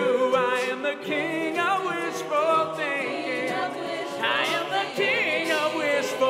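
A cappella group singing a pop song in close harmony, a male soloist's voice over the backing voices. A brighter, higher sung line with vibrato comes in about four seconds in.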